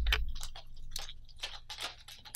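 A spinning fishing reel cranked fast by hand, its handle and gears giving a quick run of ticks, about four a second.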